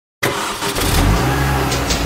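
Kawasaki Ninja motorcycle engine running, settling into a steady low note from about a second in.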